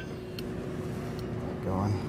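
A light click of a spoon against a stainless steel pan as butter is dropped in, about half a second in, over a steady faint hum; a voice begins near the end.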